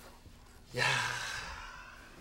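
A person's breathy sigh that starts suddenly about three quarters of a second in and fades away over about a second.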